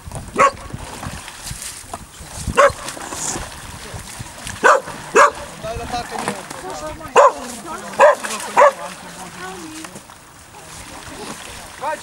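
A dog barking: about seven short, sharp barks at irregular intervals, over faint background voices.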